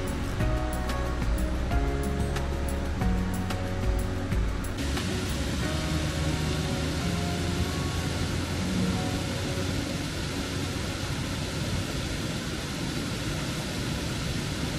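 Background music with a steady beat, cut about five seconds in to the steady rush of water pouring over a stepped concrete weir, with the music carrying on faintly beneath it.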